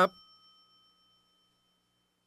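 A man's last spoken syllable, then a bell-like sound-effect chime of a few high tones that rings on and fades away over about a second and a half.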